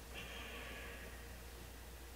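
A soft breath out, a hiss of about a second just after the start that fades away, over a low steady hum.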